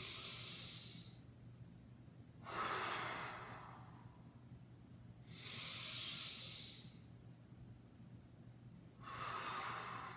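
A man's deep, paced yoga breathing: four audible breaths about three seconds apart, alternating inhale and exhale, starting with an inhale. The inhales are a higher, thinner hiss and the exhales a fuller rush of air. The breathing is deliberately sped up to build body heat.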